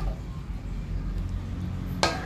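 A steady low rumble in the background, with no clear clink or scrape inside.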